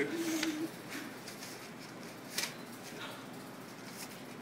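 Paper envelope being torn open and the letter pulled out: a few short rips and paper rustles over low room noise, the loudest about two and a half seconds in.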